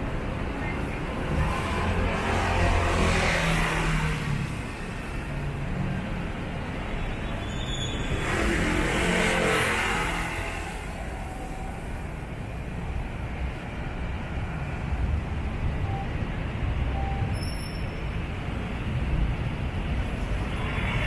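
Street traffic passing close by: a steady low rumble of engines and tyres, swelling and fading twice as vehicles go past, about two seconds in and again around nine seconds in.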